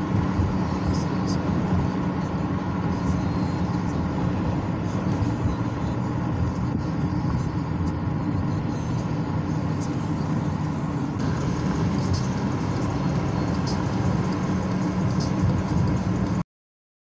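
Steady road and engine noise of a moving car, heard from inside the cabin: an even low hum with tyre rumble.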